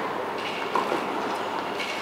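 Steady background noise of an indoor tennis hall, with a short sound about three quarters of a second in.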